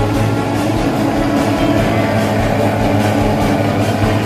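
Mosquito fogging machine running with a loud, steady, pitched drone as it sprays insecticide fog.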